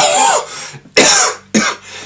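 A man's voice making three short, breathy, cough-like bursts; the loudest comes about a second in.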